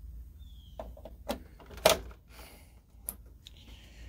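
Electrical plugs being pushed into the outlets of a power strip and handled: a few sharp clicks and knocks, the loudest about two seconds in, over a faint low hum.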